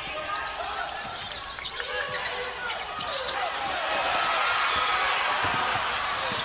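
Basketball being dribbled on a hardwood court under the steady hum of an arena crowd. The crowd noise swells over the last couple of seconds.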